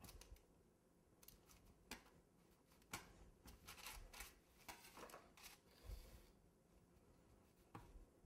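Faint rasping strokes of a serrated bread knife sawing through sponge cake, with a few soft clicks and taps of the blade, the strokes coming in a quick run near the middle.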